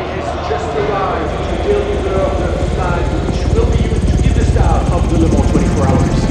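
Helicopter rotor beating fast and low, growing louder over the second half, under a voice.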